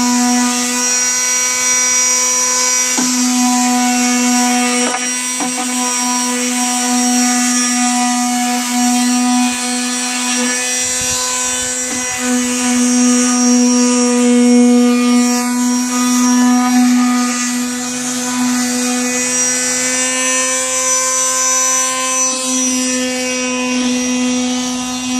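Handheld electric sander running steadily on a pine bench top, a constant high motor hum with brief dips about 3 and 12 seconds in as it is lifted or shifted.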